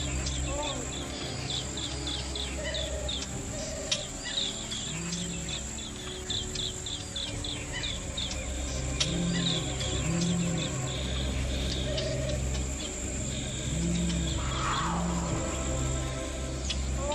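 Night ambience of rapid, high chirping calls and a steady high insect trill, over a low, sustained music drone that swells and fades. A single falling sweep sounds near the end.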